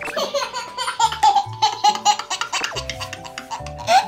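A toddler boy of about sixteen months laughing hard in a string of short bursts, over background music with steady held notes and a bass beat.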